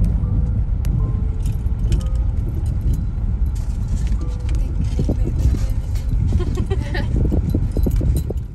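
Car tyres rumbling over a cobblestone road, heard inside the cabin, with frequent small rattles and clicks from the car's interior that grow busier in the second half.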